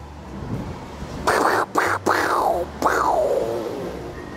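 A turntable-scratch comedy sound effect: four quick scratchy swoops, each falling in pitch, the last one the longest.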